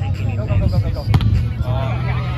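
A single sharp slap about a second in: a hand striking a volleyball during a rally, over background voices.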